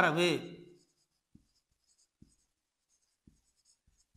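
A man's voice trails off in the first second, then a marker writes on a whiteboard: faint light scratching and a few soft taps of the tip against the board.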